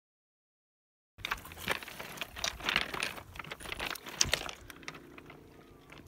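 Stones and pebbles clicking and crunching underfoot, a quick irregular run of sharp clacks that starts abruptly about a second in and thins out near the end.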